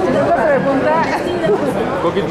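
Several people talking at once, overlapping chatter of voices with no other sound standing out.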